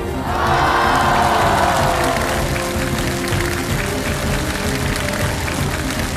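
Stage background music with a live audience applauding over it. The crowd sound swells loudest in the first couple of seconds.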